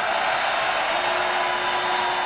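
Steady roar of a stadium crowd from the game broadcast, an even wash of noise with no distinct cheers.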